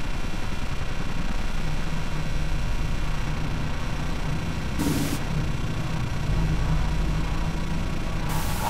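A steady low rumbling drone, with a short burst of hiss about five seconds in and another near the end.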